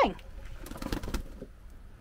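Domestic hens giving soft, low clucks, with a few light ticks and rustles for about a second near the middle.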